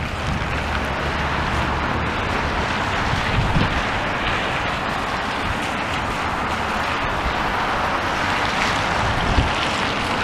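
Traffic passing on wet roads, a steady hiss of tyres on the wet tarmac, with wind buffeting the microphone.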